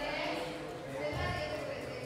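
A person speaking quietly, with a low thud about a second in.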